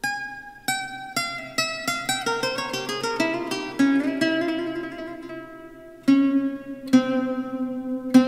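Instrumental music played on a plucked string instrument: single notes are struck one after another and left to ring. They come about two a second at first, quicken into a fast run, then settle into a few longer sustained notes near the end.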